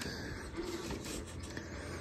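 Redcat Gen 8 scale RC crawler's electric motor and geared drivetrain running at crawl speed: a steady mechanical noise with fine ticking as its tyres work over wooden boards. The noise is the constant drivetrain noise that the owner takes as a characteristic of Redcat crawlers.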